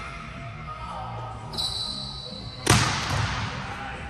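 A volleyball being spiked: one sharp, loud smack about two-thirds of the way in, echoing through a large hall. It comes right after a high steady squeak of shoes on the court during the approach.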